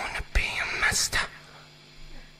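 Singer's breathy, whispered vocal sounds close to a studio microphone, stopping a little past a second in. After that only a faint, steady low hum remains, fading away.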